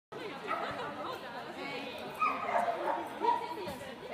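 A dog barking and whining over the chatter of people talking.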